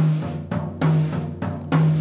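Jazz drum kit played with sticks, coming in suddenly after a pause: a run of about five drum hits, roughly two or three a second, with a low drum tone under a cymbal and snare wash.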